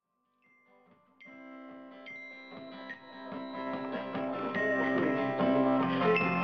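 Acoustic guitar and glockenspiel starting to play, coming in about a second in and growing steadily louder, with bell-like glockenspiel notes ringing over the strummed guitar.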